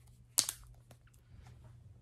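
Handling noise from a cardboard salt container and ruler being turned in the hands: one sharp click about half a second in, then faint rustling and small ticks.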